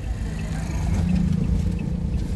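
Low, steady rumble of a vehicle's engine and road noise, heard from inside the moving vehicle, with a faint steady hum underneath.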